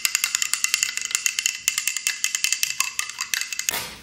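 Spoon stirring chia seeds in water in a glass, clinking rapidly against the glass wall, many quick clinks a second, stopping shortly before the end.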